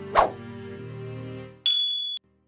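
Soft background music with a short click-like tap sound effect just after the start, then a bright ringing chime (a ding) near the end as the music drops out.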